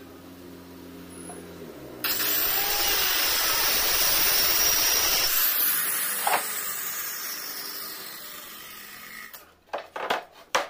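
A power tool starts abruptly about two seconds in, runs loudly for a few seconds, then fades away gradually. Sharp knocks near the end come as plywood boards are handled.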